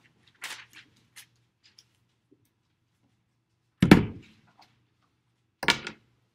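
Papers and a book being handled: faint rustles and clicks in the first second, then two heavy thumps about two seconds apart, the first the louder.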